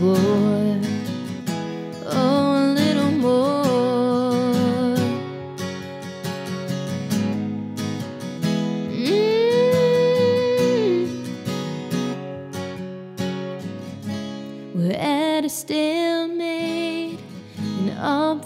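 A song with strummed acoustic guitar and a sung melody: the last word of a chorus line is held at the start, followed by long, gliding held vocal notes over the strummed chords.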